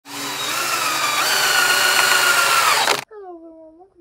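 Loud, harsh buzzing intro sound effect with steady tones that step up in pitch a little over a second in, cutting off abruptly after about three seconds; a voice then starts speaking.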